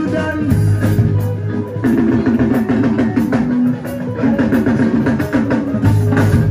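Loud live mbalax band music: drum kit and percussion driving a fast beat under a guitar playing a quick repeating riff.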